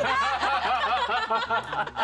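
Several women laughing at once, in quick, overlapping bursts of laughter.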